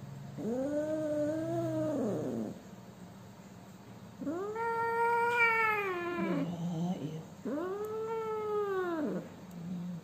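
A kitten yowling three times while it is held and handled. Each drawn-out call lasts about two seconds and rises then falls in pitch.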